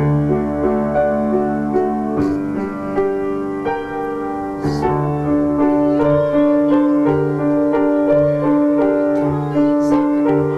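Upright piano played by hand: a melody moving over held low bass notes.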